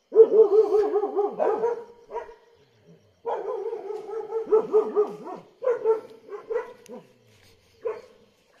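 A dog giving rapid, wavering yelping barks in two long runs, then a few shorter separate yelps. It is the alarm of a dog hiding, which is taken as a sign of danger, such as a predator close by.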